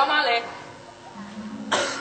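An actor's amplified voice speaking a line of stage dialogue, then after a short pause a sudden harsh, rough vocal burst near the end, just before the next words.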